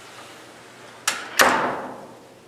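Two sharp bangs about a third of a second apart, the second louder and fading out over about half a second.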